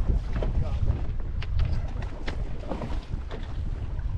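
Wind buffeting the microphone on an open boat, a steady low rumble, with a few short sharp ticks in the middle as a fish is fought to the boat.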